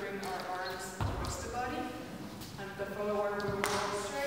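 A voice scatting the dance rhythm without clear words, over dance steps on a hardwood floor: a heavy foot thud about a second in and another sharp step shortly before the end.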